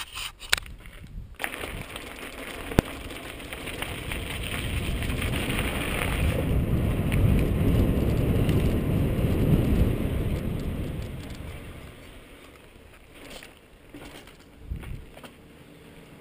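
Wind rushing over a helmet camera's microphone as a mountain bike rolls along, building to its loudest about halfway through and dying away after about twelve seconds. A few sharp clicks and knocks from the bike come in the first seconds.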